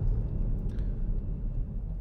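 Steady low road and engine rumble inside the cabin of a 2016 Citroen Grand C4 Picasso with a 1.6 BlueHDi diesel engine, on the move and easing slightly as the car slows under braking.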